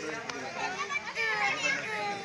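Children's voices shouting and chattering as they play, several high voices overlapping.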